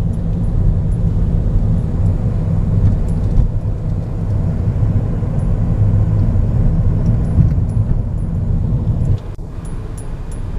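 Steady low rumble of a moving car's road and engine noise heard from inside the cabin, which drops in level suddenly about nine seconds in.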